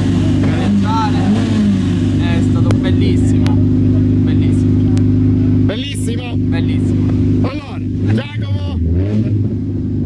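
Car engine idling steadily at a constant pitch close by, with voices talking over it; the engine note dips briefly and recovers a little before the end.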